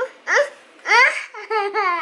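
A young child laughing in several short, high-pitched bursts.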